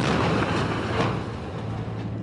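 Battle tank's engine and tracks: a steady, noisy mechanical rumble and clatter, a little louder near the start and again about a second in.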